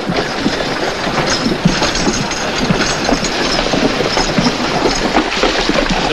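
Horse-drawn wagons rolling: a steady clatter of hooves and rattling wooden wheels and harness.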